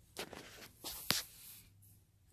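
Faint scratching and rustling of a pen writing in a paper notebook, with a light tap just after a second in.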